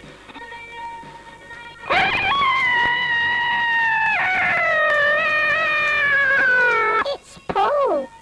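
A high voice gives one long scream of about five seconds, starting about two seconds in and sliding slowly down in pitch: a cry of shock at being caught.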